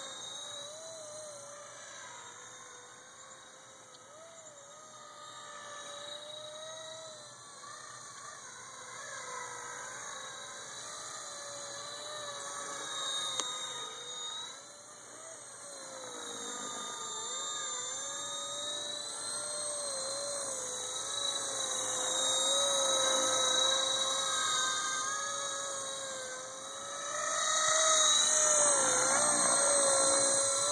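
Electric whine of a Honey Bee FP V2 RC helicopter fitted with a CP3 Super 370 main motor and direct-drive tail motor, in flight, its pitch wavering up and down as the throttle is worked. It grows louder as the helicopter comes in low near the end.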